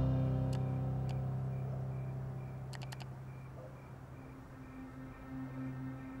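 Soundtrack music fading down, with computer mouse clicks over it: two single clicks about half a second apart near the start, then a quick triple click about three seconds in.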